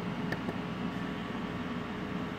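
Steady low hum and hiss of background room noise, with one faint click shortly after the start.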